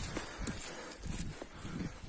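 Faint footsteps on a muddy dirt track, a few irregular soft steps over a low outdoor background.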